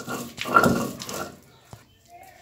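A stone roller grinding cooked beans into a paste on a flat shil-pata grinding stone, rasping and scraping over the wet mash for about a second. A single sharp knock comes shortly before the end as the roller is set down on the stone.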